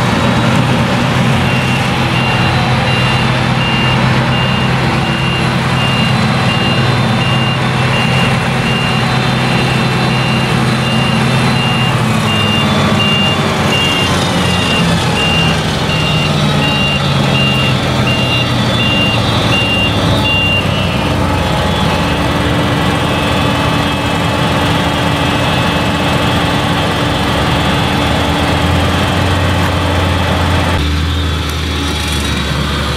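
Claas Jaguar forage harvester running under load, with its reversing alarm beeping steadily until about two-thirds of the way in. The engine note drops around the middle.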